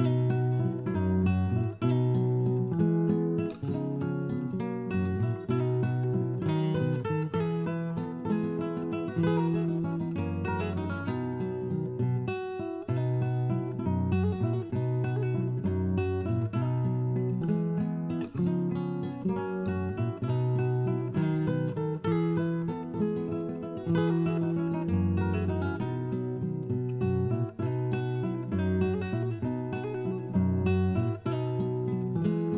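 Background music played on acoustic guitar, plucked and strummed notes in a steady rhythm.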